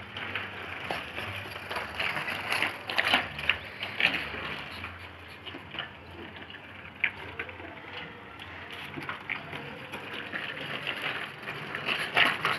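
A child's bicycle with training wheels being pushed over rough, gritty concrete: irregular crunching and rattling clicks as the wheels roll, over a low steady hum.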